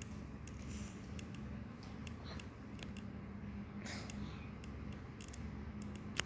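Quiet room with a steady low hum, scattered light clicks and taps, and two brief soft rustles around the middle.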